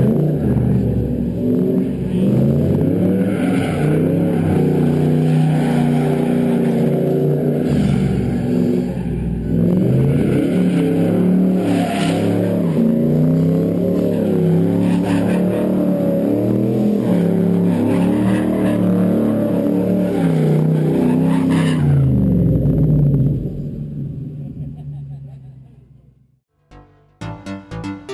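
Car engine revving hard, its pitch rising and falling again and again, then fading out over the last few seconds.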